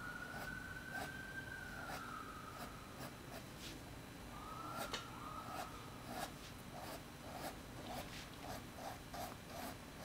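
Fine-point Faber-Castell artist pen scratching on sketchbook paper in quick, short strokes as strands of hair are drawn. The strokes are sparse at first and become quicker and more regular in the second half, about three a second.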